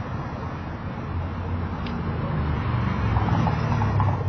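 Low rumble of a passing road vehicle, swelling to its loudest near the end and then starting to fade.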